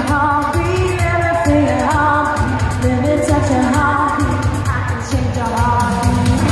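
Live pop music in a large arena, heard from the crowd: a woman singing with vibrato over a band with a steady beat.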